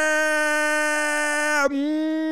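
A man's long, held yell of 'yeah' at one steady high pitch, breaking briefly about one and a half seconds in and then carrying on.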